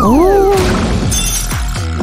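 Cartoon sound effects over background music: a gliding, voice-like whoop near the start, then a shattering crash about a second in.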